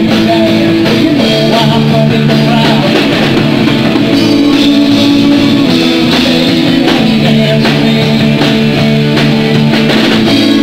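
Live rock band playing loudly and steadily: electric guitars over a drum kit.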